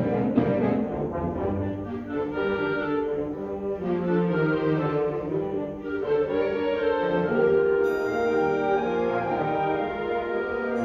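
A full concert band of woodwinds, brass and percussion playing. A sharp percussion hit right at the start gives way to sustained brass chords.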